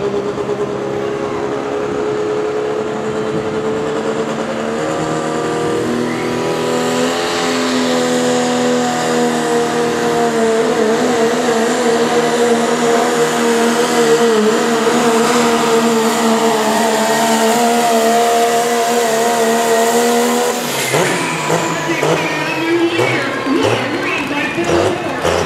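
Dodge Ram diesel pickup pulling a sled at full throttle, the engine note holding steady and climbing slowly in pitch for about twenty seconds, then dropping away suddenly near the end.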